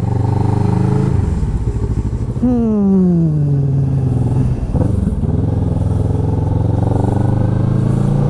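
Kawasaki ER-6n's 649 cc parallel-twin engine running while the motorcycle is ridden. About two and a half seconds in, the engine note drops steadily over about two seconds as the revs fall off, then holds steady.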